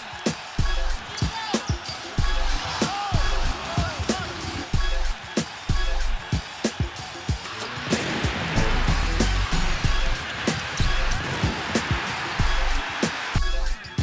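Background music with a heavy bass beat and sharp regular hits. A louder noisy layer joins about halfway through and drops out near the end.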